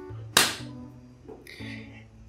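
A single sharp slap-like snap about a third of a second in, fading quickly, over faint background music.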